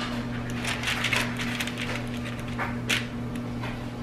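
Light handling sounds of a small metal spring-lever ice cream scoop working thick brownie dough: faint scrapes and soft clicks as a scoop is released onto parchment paper and the scoop goes back into the bowl, with one sharper click about three seconds in. A steady low hum runs underneath.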